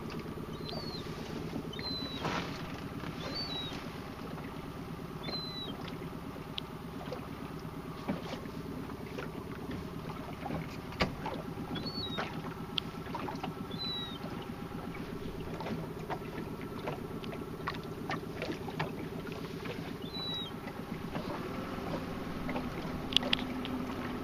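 Boat engine idling steadily under the water noise, with a few sharp knocks. Short high chirps with a falling hook come every second or two.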